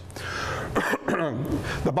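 A man clearing his throat, twice in close succession.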